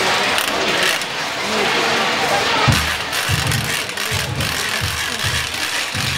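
Crowd murmuring and chatting, with a run of low, irregular thumps from about halfway through.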